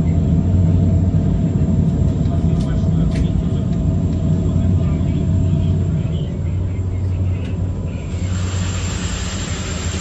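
Steady low drone of a passenger catamaran's engines, heard on board while under way. A broader hiss grows louder about eight seconds in.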